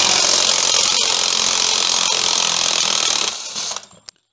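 Cordless impact wrench hammering on a lawn mower's blade bolt to loosen it, running for about three and a half seconds and then stopping.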